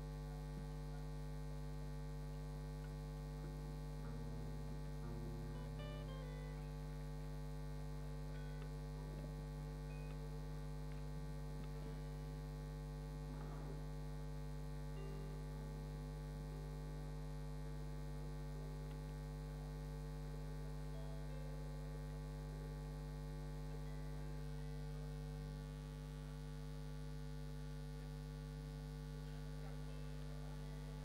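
Steady electrical mains hum with a stack of buzzing overtones, dipping slightly in level near the end.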